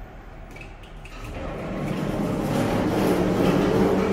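Otis cargo lift's sliding car doors closing after the door-close button is pressed. It is a low mechanical running noise that grows steadily louder from about a second in.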